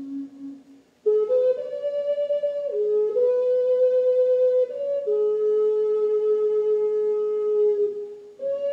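Slow solo melody on a wind instrument, played in long held notes. There is a short pause for breath about a second in, and a long low note holds through most of the second half.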